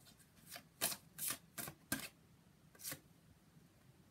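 Deck of angel oracle cards being shuffled by hand: a string of about seven short, crisp card swishes in the first three seconds, then the cards fall quiet.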